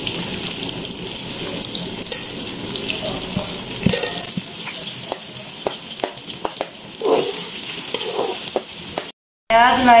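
Chopped onions sizzling in hot oil in an aluminium pot, just after going into the heated oil. Around the middle a metal spoon stirring them clicks and scrapes against the pot, and the sound cuts out briefly near the end.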